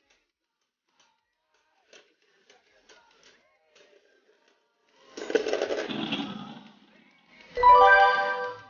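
Spinning Beyblade tops tick faintly as they touch, then a loud clattering crash comes about five seconds in as one top bursts apart. A short musical jingle follows near the end.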